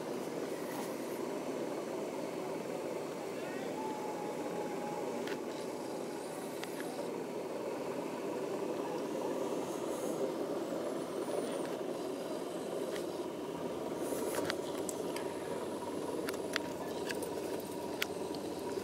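Steady rumble and hum inside a passenger train carriage, with an indistinct murmur of voices and a few faint clicks.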